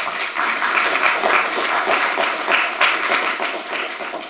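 Audience applauding, a dense patter of many hands clapping that starts to die down near the end.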